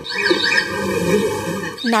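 Indistinct voices with a steady, ringing hum running under them, with no clear words.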